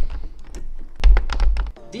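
A camera being forced out of a tripod quick-release clamp that keeps sticking, a cheap copy of a Manfrotto plate. Handling rumble on the camera's microphone comes with a quick run of clicks and knocks about a second in.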